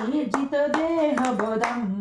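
A voice singing a Sanskrit devotional hymn in held, gliding notes, with hand claps keeping time, ending on a long held note.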